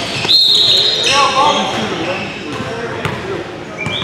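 A referee's whistle gives one steady, high blast about a third of a second in, lasting about a second, in a large gym, with voices and a few sharp knocks of a basketball on the hardwood floor after it.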